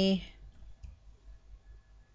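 A computer keyboard being typed on slowly, a key at a time: a couple of faint, separate clicks.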